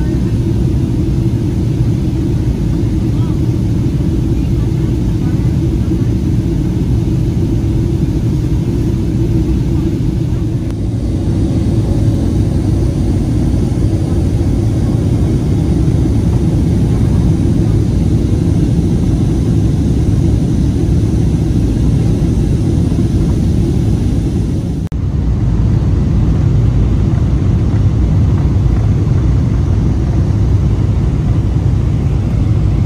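Steady cabin noise inside a Boeing 777-200LR descending on approach: engine and airflow noise, heaviest in the low range. There are two brief dips, about 11 and 25 seconds in, where the recording is cut.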